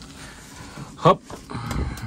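Fold-down ceiling TV monitor on a bus being pulled down from its housing, with a sharp click and a low thump near the end as it swings into place.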